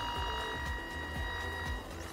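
Cable-finder receiver sounding its steady electronic signal tone as the probe passes over a buried robotic-mower control wire fed by a signal generator. One of its tones cuts out near the end.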